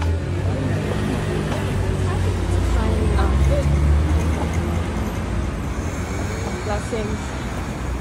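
Street traffic: a passing motor vehicle's engine rumble swells to its loudest about four seconds in, then fades, with scattered chatter from people walking by.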